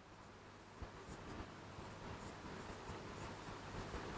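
Faint scratching and light taps of a stylus writing on an interactive display screen, with a small click a little under a second in.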